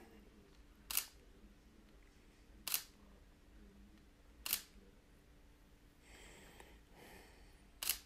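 Single-lens reflex camera shutter firing four separate single shots, each a short sharp click, a second and a half to three seconds apart, over a quiet background.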